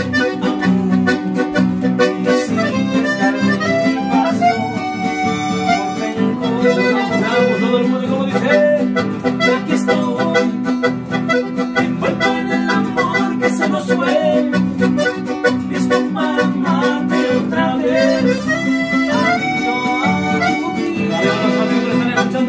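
Live instrumental passage on accordion, with acoustic guitar and bass guitar accompaniment. The accordion carries the melody in steady, held chords.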